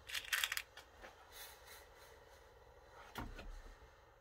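Metal millinery push pins rattling in a small dish as a few are picked out: a quick run of sharp clicks near the start. A soft bump and rustle follows about three seconds in.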